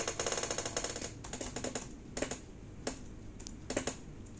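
Computer keyboard typing: a fast run of keystrokes in the first second, then a short cluster of taps and a few separate key clicks.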